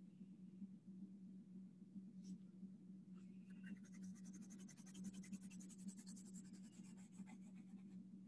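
Colored pencil shading on paper, faint: rapid, even back-and-forth strokes starting about three and a half seconds in, laying blue over another colour, over a steady low hum.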